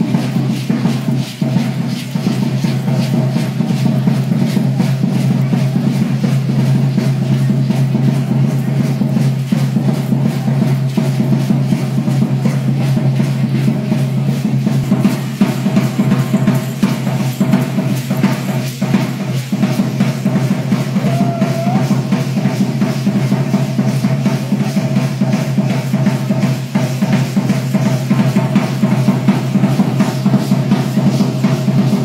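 Dance drum beaten in a fast, steady rhythm without a break, the drumming accompanying a traditional costumed folk dance.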